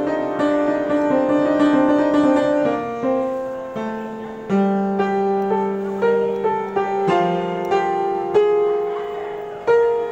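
Street piano played in a slow improvisation: chords and single notes struck and left to ring and fade, with a low note held about halfway through and a few fresh strikes near the end.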